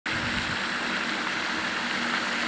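Aerating fountain's spray falling back onto the dam water: a steady splashing hiss.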